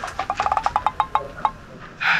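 A quick run of light, tinkling chime notes, about a dozen strikes in a second and a half, thinning out and fading before the end.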